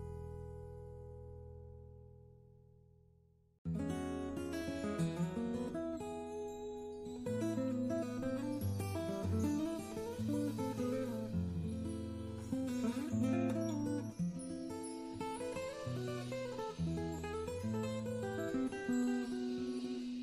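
Background bossa nova music with acoustic guitar. A held chord fades out over the first three seconds or so. About three and a half seconds in, a new passage starts suddenly with plucked guitar notes over a walking bass.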